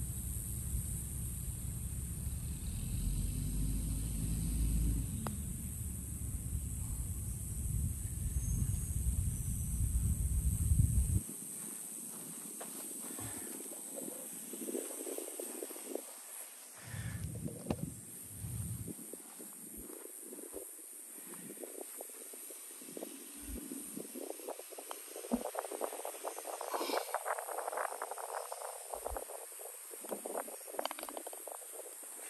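Low wind rumble on the microphone for about the first eleven seconds, cutting off suddenly. Then scattered rustles and knocks of a phone camera being handled and carried, busier near the end, over a steady high hiss.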